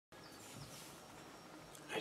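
Quiet room tone with a few faint high tones in the first half-second; a voice starts right at the end.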